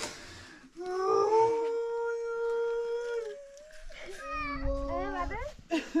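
An animal howling: one long, steady-pitched howl lasting a couple of seconds, then a run of shorter calls that swoop up and down.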